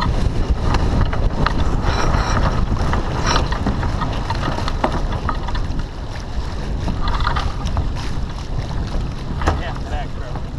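Wind buffeting the microphone of a sailboat under way, with water rushing along the hull; scattered faint crew voices and gear sounds come and go.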